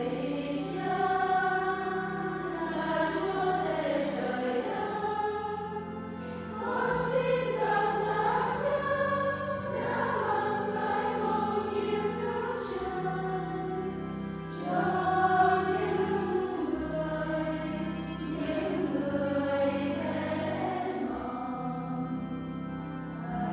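A choir singing a hymn in a church, over held low accompaniment notes that change every few seconds.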